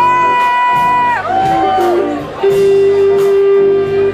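Live rock band playing with electric guitar, bass, keyboard and drums. A high held note slides down about a second in, and a lower note is held through the second half over a regular drum beat.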